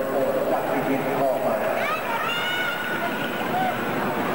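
Indistinct voices in an indoor skating arena on an old camcorder soundtrack, with one high, drawn-out shout about two seconds in.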